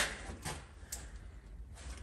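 Hinged plastic front door of a Tesla Gateway enclosure swinging open on its released latch, with a couple of faint knocks.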